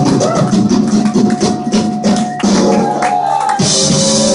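Punk rock band playing live on stage with guitars and drums, heard from among the audience. The drums keep a steady beat, the bass drops out for about a second past the middle, and the full band comes back in near the end.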